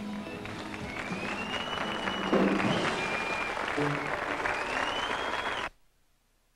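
A rock band's last chord rings out and fades as a studio audience breaks into applause and cheering, with loud whistles. The applause swells, then the sound cuts off suddenly near the end.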